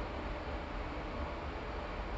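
Steady background hiss with a low rumble, no distinct events: room or recording noise.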